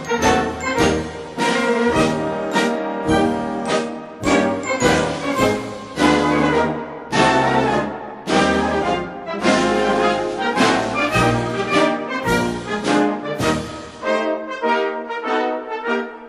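Military band playing an Austrian march, brass to the fore with trombones and trumpets over strongly accented, evenly spaced beats; the bass briefly drops out near the end.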